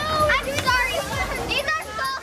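Young children's voices: high-pitched calls and squeals with quick rising and falling pitch, not forming clear words.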